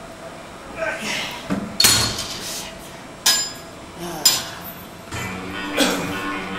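Cable machine weight stack plates clinking several times, sharp metallic clanks as the steel plates knock together during repetitions. A short vocal sound of exertion comes about a second in, and music comes in near the end.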